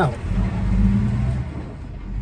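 A car driving, its steady low road and engine rumble heard from inside the cabin. A man's voice trails off just at the start.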